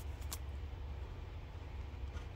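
Faint handling of glossy trading cards, with one brief click about a third of a second in, over a steady low hum.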